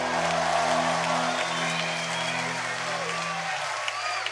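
A rock band's final chord on electric guitar and bass rings out and dies away about three and a half seconds in, while a concert crowd applauds and whistles.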